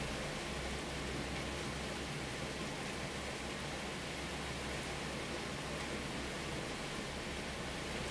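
Heavy rain falling steadily, an even hiss with no let-up.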